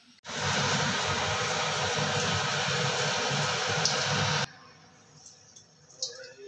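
Hot oil sizzling steadily as pithe deep-fry in a steel wok. The sizzle starts abruptly just after the start and cuts off suddenly at about four and a half seconds.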